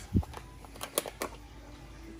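Cardboard cartons of vegetable broth being handled by hand over a stovetop pot: one dull low thump at the start, then a few light, sharp clicks and taps about a second in.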